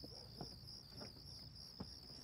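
Crickets chirping in a steady high trill, with a few faint soft taps.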